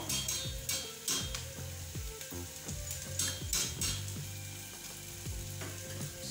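Butter-and-flour roux sizzling in a stainless steel saucepan, cooking off the raw flour for a cheese sauce, with a wire whisk stirring it and clicking against the pan every second or so.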